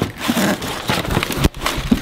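Cardboard box flaps being pulled open and crumpled packing paper rustling and crinkling, with a sharp knock about one and a half seconds in.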